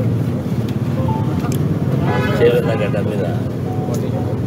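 A man's voice speaking Telugu briefly about two seconds in, over a steady low rumble of background noise.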